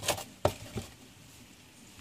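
Handling noise of an aluminium project enclosure and a circuit board on a rubber mat: a brief rustle, then one sharp knock about half a second in and a fainter tick.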